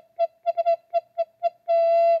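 Plastic recorder head joint blown with its open end stopped against the palm, giving a nice low note on one pitch, tongued in a quick rhythm of short notes and ending on one longer held note. The steady, gentle tone is the sign of correct breath support, not overblowing.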